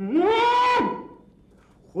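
A man's long closed-mouth hum, 'mmm', that rises in pitch and is then held for a little under a second.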